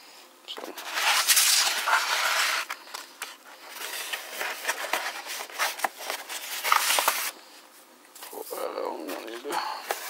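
Cardboard book mailer being torn open and handled: a long rustling rip in the first few seconds, then scattered scraping and rustling of the cardboard.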